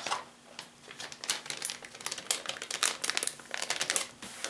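Packaging crinkling as it is handled, in a run of quick, irregular crackles.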